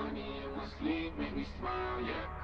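Sung vocal layers processed through iZotope VocalSynth 2, pitch-corrected in auto mode and playing on their own with a distorted, robotic sound.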